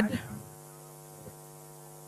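Faint steady electrical mains hum in the microphone and sound system: a low buzz with a ladder of even overtones, left bare once a spoken word trails off at the start.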